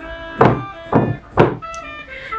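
A table being banged on three times, about half a second apart, over background music.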